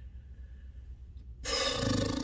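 A quiet pause, then about a second and a half in, a man's breathy, throaty grunt of hesitation as he weighs his pick.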